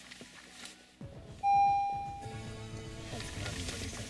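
A single electronic chime about one and a half seconds in, fading out over a second. Then an Android car head unit's FM radio comes on playing music quietly, starting at its preset start-up volume of 1, the lowest setting.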